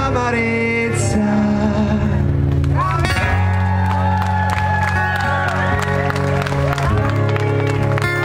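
Live acoustic band music at the close of a song: acoustic guitar and sustained chords with a male singer's voice, and some crowd cheering.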